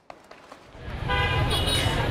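Street traffic noise rising in, with a vehicle horn sounding one steady tone for about the last second.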